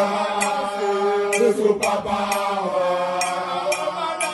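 A group of men chanting together in unison in a steady, repeated line. Sharp short hits come about twice a second under the chant.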